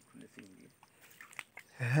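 Hands working in wet creek mud, giving a few small wet clicks and squelches over low, faint voices; a man's voice speaks loudly right at the end.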